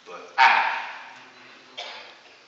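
A single loud, short vocal shout that fades away over about a second, followed by a fainter vocal sound just before the end.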